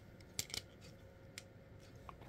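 Small clicks of hard plastic toy parts being handled and fitted on an MFT 42-SolarHalo transforming jet toy: two faint clicks about half a second in, and a fainter one a second later.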